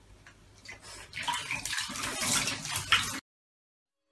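Water running and splashing in a bathtub, building up about a second in and cutting off suddenly near the end.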